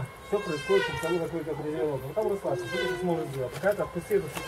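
Indistinct voices talking throughout, too unclear for the words to be made out.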